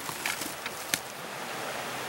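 Faint rustling and a few light clicks, with one sharper click about a second in, over a steady faint hiss of outdoor background.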